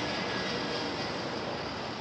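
Steady rush of freeway traffic passing below, an even continuous noise that eases slightly.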